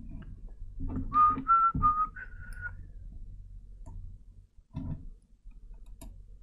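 A person whistling four short notes in a row, each a little apart in pitch, about a second in. Dull knocks from handling a vape mod and dripper come before and after.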